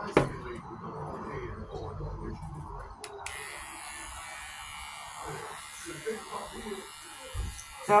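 Small cordless electric pet hair clippers switched on about three seconds in, then running with a steady high buzz.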